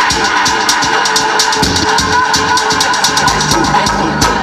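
DJ mix of dance music played loud over a sound system, with a steady kick-drum beat and high percussion.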